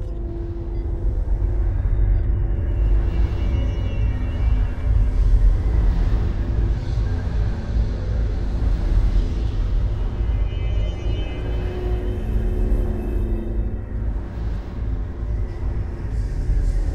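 Suspenseful horror-film background music: a deep, steady rumbling drone under held tones that swell and fade, building in loudness over the first couple of seconds.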